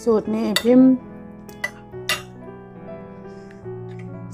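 Metal spoon clinking against a plate while scooping through a glass-noodle salad: two sharp clinks about half a second apart in the middle, over soft background music.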